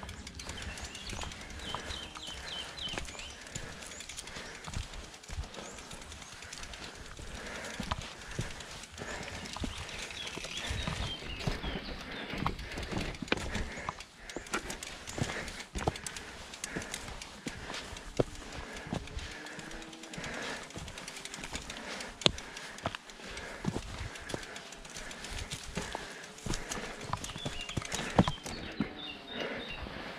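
Footsteps on a rocky dirt trail as a mountain bike is pushed uphill on foot, with irregular knocks and crunches from shoes and tyres on stones.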